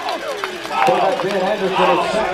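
Indistinct voices of players and onlookers shouting and calling over one another, with one longer held call in the second half.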